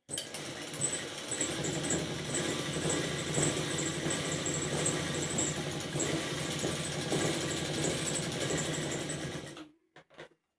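Sewing machine running steadily at speed, stitching one long continuous seam across the fabric, starting right at the beginning and stopping shortly before the end.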